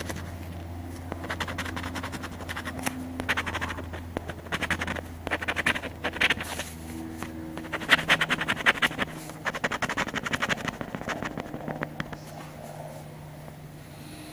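A coin scratching the coating off a scratch-off lottery ticket: bursts of quick scraping strokes with short pauses between them, thinning out near the end.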